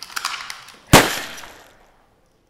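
A single loud gunshot about a second in, dying away over under a second: a dubbed Remington gunshot recording standing in for a handgun shot to the head. Just before it comes a short burst of crackling noise.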